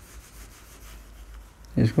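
Faint scratching of a marker pen writing on a whiteboard.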